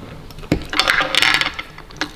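A sharp click, then about a second of rapid rattling clicks of small hard objects.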